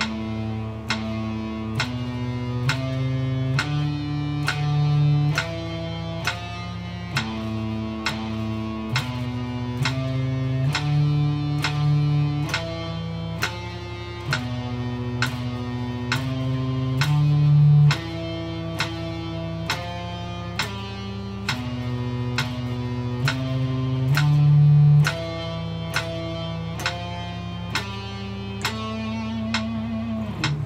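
Electric guitar playing a slow exercise of single picked notes, one pitch after another at an even pace of 60 BPM, over steady metronome clicks.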